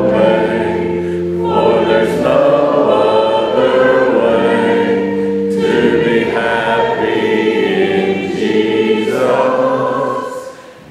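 A church congregation singing a worship song together with the leaders at the front, in long held notes and phrases of a few seconds each.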